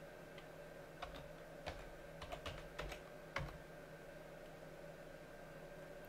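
Computer keyboard keystrokes typing a terminal command: about six scattered key clicks in the first half, then only a faint steady hum.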